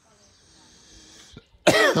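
A man coughs once, sudden and loud, about one and a half seconds in, going straight into a drawn-out voiced "oh". Before the cough there is only a faint hiss.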